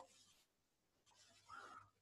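Near silence with the faint scratching of a stylus writing numbers on a pen tablet, and a brief faint sound shortly before the end.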